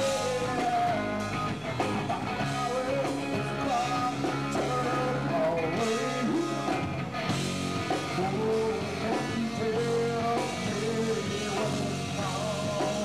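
Live rock band playing: electric bass and drum kit with guitar, and a singer's voice over the band.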